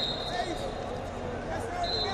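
Two short, steady high-pitched squeaks, one right at the start and one just before the end, over the murmur of voices in a large hall.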